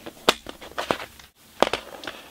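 Plastic CD jewel cases clicking and clacking as they are handled, a handful of short sharp clicks.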